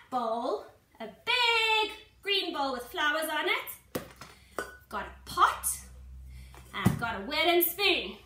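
Mostly a woman talking, with two short sharp knocks, one about four seconds in and another near seven seconds.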